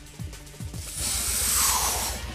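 Background music with a steady low beat; about halfway through, a loud hissing whoosh comes in over it and becomes the loudest sound.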